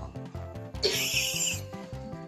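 A single loud, breathy cough lasting under a second, about a second in, over background music with a steady beat.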